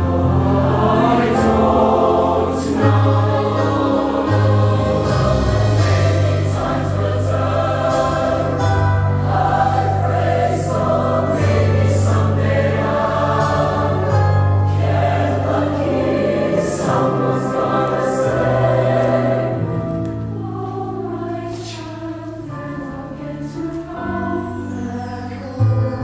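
Mixed show choir singing sustained chords in harmony. The sound thins out and drops in level near the end.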